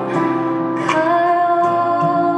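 Slow ballad performed live over an arena sound system, a singing voice holding long notes over guitar accompaniment, with the line rising to a new note about a second in.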